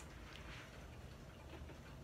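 Quiet room tone with a faint steady low hum and one soft click about a third of a second in.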